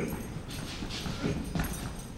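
Footsteps of hard-soled shoes on a wooden stage floor, quick steps about every half second as an actor crosses the stage.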